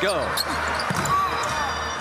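Basketball arena game sound: a steady crowd hum with a basketball bouncing on the hardwood and short sneaker squeaks about a second in.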